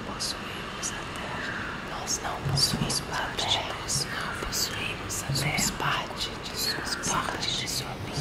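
Several voices whispering in Portuguese, layered and overlapping one another, with many hissing 's' sounds.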